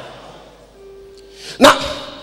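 A faint single held musical note sounds in a lull, then a man shouts one word, 'Now', loudly near the end.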